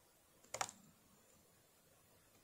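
A quick cluster of computer mouse clicks about half a second in, with the room otherwise near silent.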